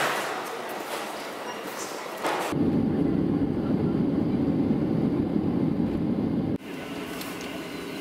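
Airport terminal hall ambience, cut off after a couple of seconds by the loud, steady low rumble of an airliner cabin as the plane rolls fast along the runway at night. About 6.5 s in this cuts to quieter, steady cabin noise of the jet taxiing on the ground.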